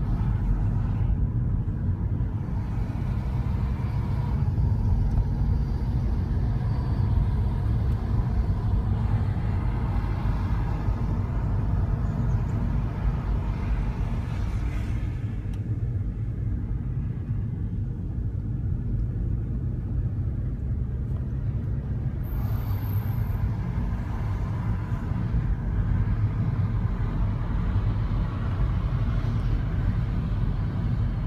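Car cabin noise while driving: a steady low rumble of engine and tyres on the road, heard from inside the car.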